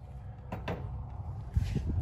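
A light click, then a few dull low knocks and bumps near the end from a gloved hand handling parts under the car, over a steady low hum.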